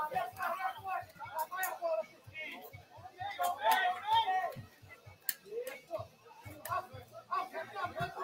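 Indistinct voices of players and onlookers calling out at a football pitch, with scattered sharp clicks.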